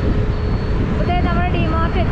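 Steady low rumble of a car driving on the road, engine and tyre noise, with a voice coming in about halfway through.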